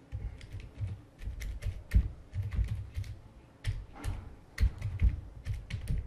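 Typing on a computer keyboard: an uneven run of quick keystroke clicks, each with a low thud.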